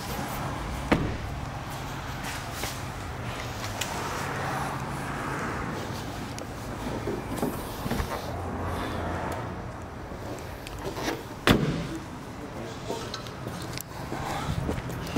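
Audi Q5's engine idling, a low steady hum, with a few sharp knocks, the loudest near the end.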